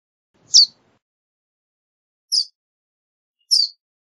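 Verdin giving three short, high, down-slurred chip notes, spaced one to two seconds apart.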